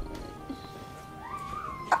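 Soft background score of held, steady tones, with a whine-like note gliding upward and holding about a second and a half in.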